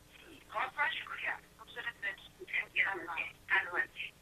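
A caller's voice coming in over a telephone line, thin and narrow like a phone call and quieter than the studio voice, speaking in short broken phrases.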